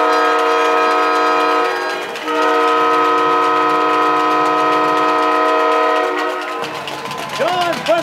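Arena goal horn blowing two long, steady blasts, signalling a goal just scored. The first blast ends about two seconds in; the second stops about six and a half seconds in.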